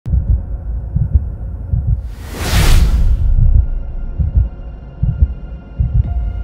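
Electronic intro sound design: deep bass thumps pulsing unevenly, with one loud whoosh sweeping up about two seconds in. Faint, steady high tones hang on underneath for the last couple of seconds.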